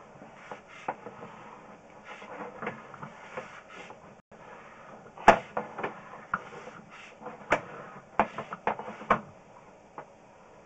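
Irregular clicks and knocks of a sewer inspection camera's push cable being pulled back in. The loudest knock comes about five seconds in, and a quick run of them follows near the end.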